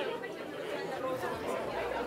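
Indistinct background chatter of several people in a large room, with no clear voice up front.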